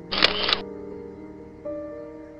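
Instrumental background music with soft sustained notes. Near the start, a short burst of noise about half a second long, with a sharp click at its start and its end, stands out over the music.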